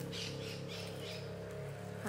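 Scissors snipping through paper, a few short crisp cuts in the first second, over a steady low hum.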